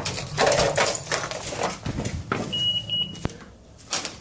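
A dog's excited reunion sounds: scuffling and movement, with a brief high, thin, steady whine about two and a half seconds in.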